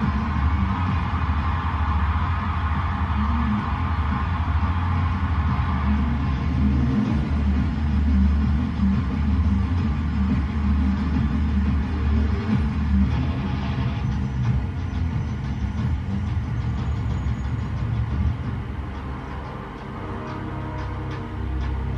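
Motorcycle engine rumbling beneath dramatic music, both from a played-back film soundtrack; the engine sound thins out near the end.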